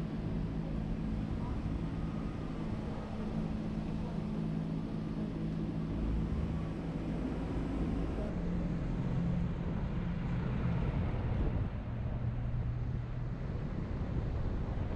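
Motor vehicle engine running close by, a steady low hum whose pitch drops about two-thirds of the way through, over low wind rumble on the microphone.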